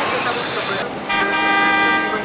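A vehicle horn sounding once, one steady multi-note blast held for about a second, over street traffic noise.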